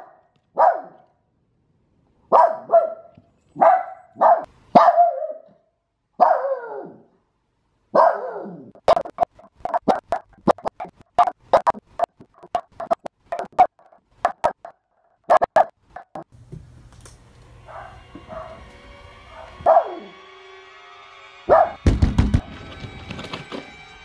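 Small white dog left home alone, barking and crying in separation distress: separate yelps and whines, two with a drawn-out falling cry, then a fast run of clipped, sped-up barks. Music comes in over the last several seconds, with a loud thump about two seconds before the end.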